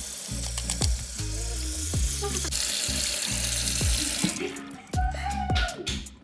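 Kitchen tap water running over oysters in a stainless steel bowl while they are scrubbed clean with a knife; the water stops about four seconds in. Background music with a steady beat plays throughout.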